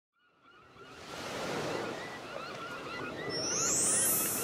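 Beach ambience of surf washing on the shore, fading in from silence, with many short bird chirps over it. Near the end a high, rising shimmer begins.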